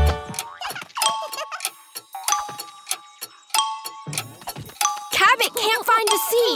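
Bouncy children's music cuts off abruptly at the start, as in a game of musical chairs. Then come sparse cartoon sound effects, short chiming dings and light taps, with a high cartoon voice near the end.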